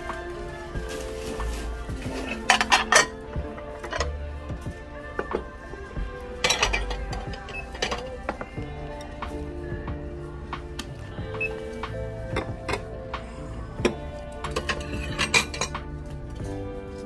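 Background music, with ceramic plates clinking against each other as they are handled: a few clinks about three seconds in, more about seven seconds in, and again near the end.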